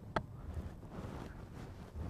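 Quiet outdoor background with one brief, faint click just after the start.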